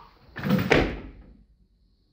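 Loaded barbell with bumper plates being cleaned to the shoulders: two quick clattering impacts about half a second in, as the bar and plates jolt and the feet land in the catch, then fading.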